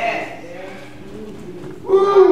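A preacher's voice, dropped lower in level and drawn out on long held tones between phrases, with louder speaking starting again near the end.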